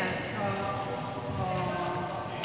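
Indistinct chatter of several voices in a reverberant sports hall, with scattered knocks on the court floor.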